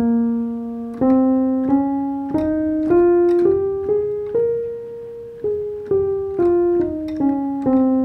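Piano sound from a MIDI controller keyboard playing the B-flat Dorian scale one note at a time. It climbs an octave from B-flat, holds the top B-flat for about a second, then steps back down, each note struck and left to decay.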